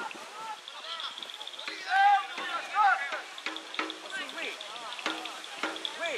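People shouting and calling across a youth football pitch, with two loud calls about two and three seconds in. A steady high buzz runs underneath from about a second in.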